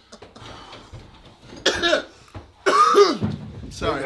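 A person coughing hard twice: a short cough about a second and a half in, then a longer, louder one about a second later.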